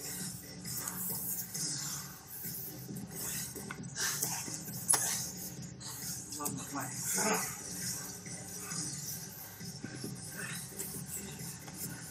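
Gym room sound during a grappling roll: faint, indistinct voices with scattered small clicks and knocks from bodies and gis on the mats.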